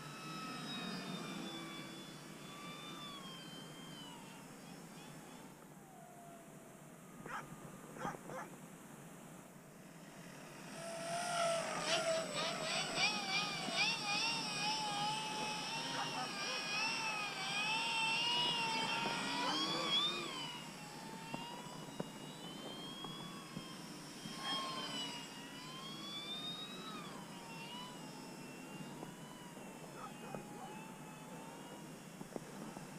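Brushless electric motor and 13x6 four-blade propeller of a Multiplex FunCub RC plane in flight, a whine that rises and falls in pitch with throttle and passes. It grows much louder from about eleven to twenty seconds in as the plane flies close by, then fades back.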